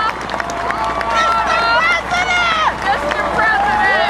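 Outdoor crowd of spectators: several nearby raised voices talking and calling out over a general hubbub, with a steady low rumble underneath.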